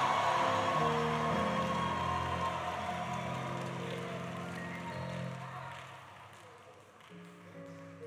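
A church congregation cheering and shouting, dying away over the first few seconds, over a keyboard playing held chords that change a few times. Everything fades steadily toward the end.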